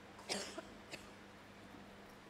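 A single short cough a moment in, then a brief fainter blip just after, over a faint steady low hum.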